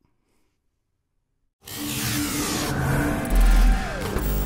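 About a second and a half of near silence, then a sudden loud rushing whoosh from a logo-intro sound effect. A tone glides downward through it, and a deep boom near the end is the loudest part.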